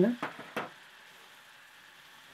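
Butter and flour sizzling faintly in a stainless steel saucepan as a wooden spoon stirs them into a roux, with two brief spoon scrapes in the first second.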